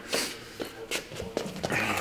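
Feet shuffling on foam gym mats and clothing rustling as two wrestlers step in and lock a two-arm underhook clinch: soft, brief scuffs and brushes.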